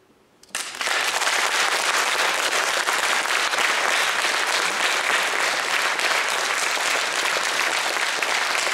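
Audience applauding. The applause breaks out about half a second in, after a brief hush, and then holds steady.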